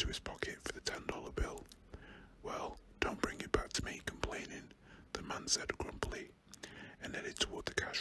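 A man whispering, reading a story aloud in a British accent, with short sharp clicks between words.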